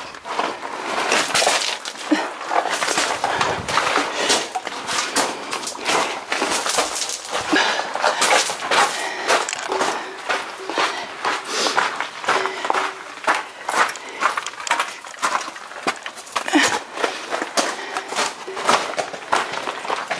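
Quick, uneven footsteps crunching and scuffing on a gravelly rock floor, with scrapes close by as the walker squeezes through a narrow, low rock passage in a crouch.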